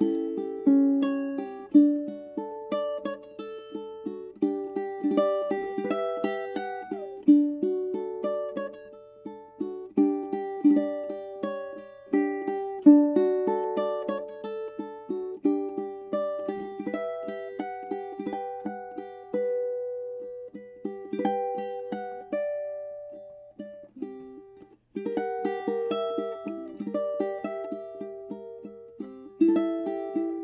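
Oli L2 TSE spruce and ebony tenor ukulele fingerpicked solo, a melody of plucked single notes and chords that ring and decay. The playing pauses briefly about three-quarters of the way through, then picks up again.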